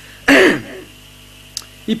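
A man clears his throat once, close to the microphone: a short, harsh sound falling in pitch, a moment after the start.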